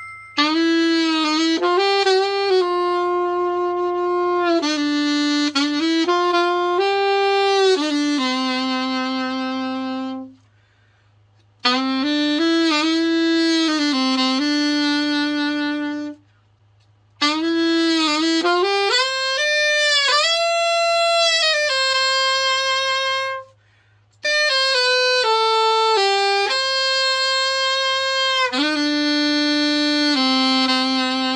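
Selmer Super Action 80 Series II alto saxophone being play-tested after a full overhaul: a melody in four phrases, with three short breaks for breath between them.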